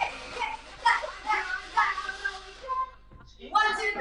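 A person's voice, indistinct, with a short pause about three seconds in.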